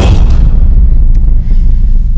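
A loud, deep, steady rumble, the closing sound of a video teaser's soundtrack played over the hall's speakers, coming right after a sharp hit.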